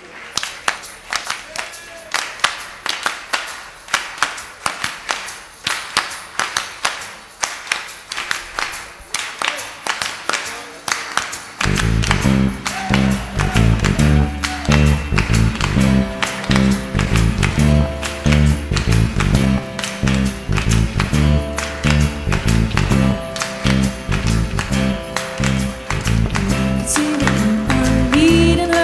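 Many hands clapping a steady beat in unison as a song's clapped intro, then about twelve seconds in a live indie-pop band comes in with bass, drums and guitars over the continuing handclaps.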